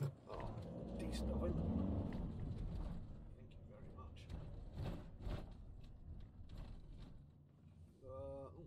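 Van engine and road noise heard from inside the cab, the engine note rising as the van pulls away, with a few faint knocks as it crosses the bridge.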